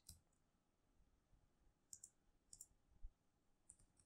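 Faint computer keyboard key clicks over near silence: a few short pairs of taps about two seconds in and again near the end as code is typed.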